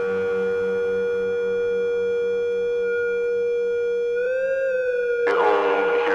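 Hardcore electronic dance music in a breakdown: a single synth note held steady, wavering briefly in pitch about four seconds in, before the full track comes back in about five seconds in.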